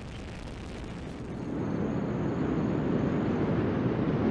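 Delta IV Heavy rocket's three RS-68A liquid-hydrogen engines at full thrust just after liftoff: a low, rough noise that grows louder from about a second in.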